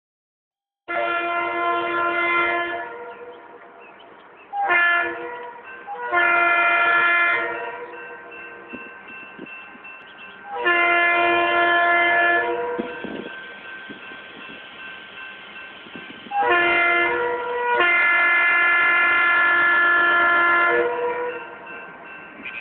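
Diesel locomotive air horn sounding a chord in six blasts as the train approaches: long, short, long, long, short, long, the last four in the long-long-short-long grade-crossing pattern. A lower running sound from the train fills the gaps between blasts.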